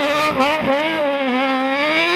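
A hill-climb race car's engine running at high revs as the car passes. The note is high and wavering, with short dips in pitch near the start and under a second in.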